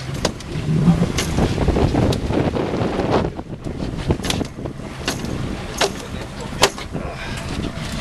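A boat's outboard motor running with a steady rumble, wind buffeting the microphone, and a few sharp clicks scattered through.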